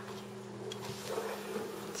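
A steady low electrical hum, with faint rustles and light clicks from handling a phone and a charger.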